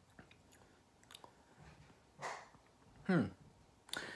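A person's mouth while tasting a sip of water: faint lip smacks and tongue clicks, a breath out about two seconds in, then a short "mm" hum that falls in pitch about three seconds in.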